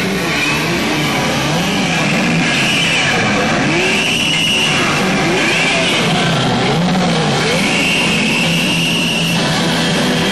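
Live rock band with a heavily distorted electric guitar playing notes that slide up and down in pitch over a loud, dense wash of band sound.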